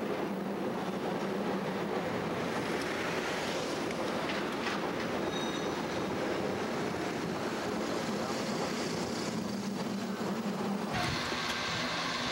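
Steady rumble and rattle of a rail car riding along street tracks, heard from on board. Near the end the sound turns brighter and hissier as the car reaches a curve in the track.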